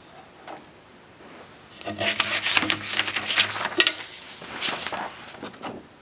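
Handling noise: a cluster of sharp knocks and rubbing scrapes on wood and paper, loudest from about two to four seconds in, with a couple of shorter bursts after.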